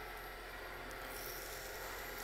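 Small wood lathe spinning a pen blank, its motor running with a faint steady hum.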